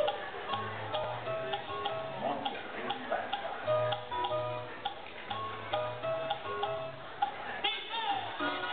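Live music performance: short, separate pitched notes over a low bass line, in a steady rhythm.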